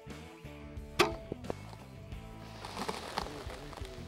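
Excalibur Matrix 405 Mega recurve crossbow firing a bolt: one sharp, loud snap of the string release about a second in, followed shortly by fainter clicks.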